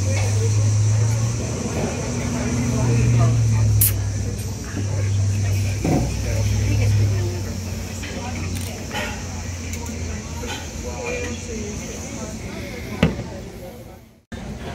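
A man's low, drawn-out wordless 'mmm' sounds of appreciation in several stretches while he savours a sip of beer, over a steady high drone. There is a sharp click near the end.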